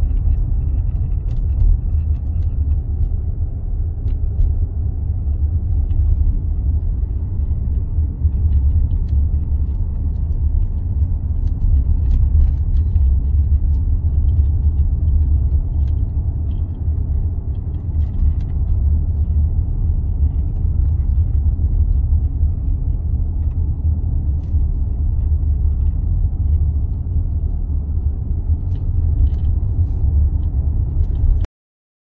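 Steady low rumble of a car driving, road and engine noise heard inside the cabin.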